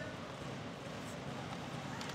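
Live ice hockey rink sound: skates and sticks on the ice with a few sharp taps, over arena crowd noise.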